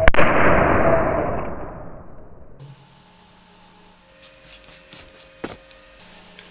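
A loud crack as a charged 450 V, 1400 µF electrolytic capacitor discharges in a spark across its wires, followed by a noisy rush that fades over about two seconds. A few faint clicks follow.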